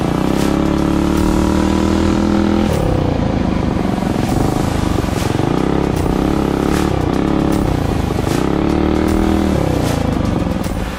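Small four-stroke minibike engine running under throttle, holding a steady pitch for the first few seconds, then dipping and climbing in pitch again and again as the rider eases off and opens the throttle.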